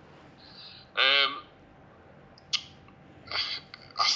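A brief hummed 'mm' from a person's voice, lasting under half a second, about a second in. A single sharp click follows about halfway through, and a short hiss of breath comes near the end over a quiet room.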